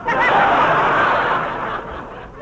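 Studio audience laughing at a joke on an old radio broadcast recording; the laughter breaks out suddenly and fades over about two seconds.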